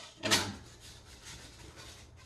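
Thin bentwood lid ring being worked off a wooden box body: one short, tight wood-on-wood scrape about a quarter second in, then faint rubbing as the wood is handled.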